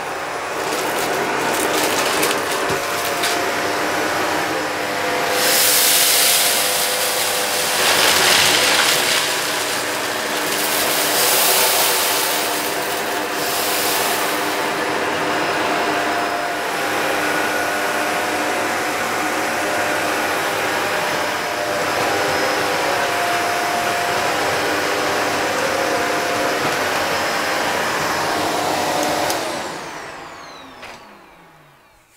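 Shark DuoClean upright vacuum cleaner running on its hard-floor setting over tiles: a steady motor hum and airflow rush. It rushes louder a few times in the first half as it picks up lines of flour, oats, lentils, cereal and rice. Right at the end it is switched off and the motor starts to wind down.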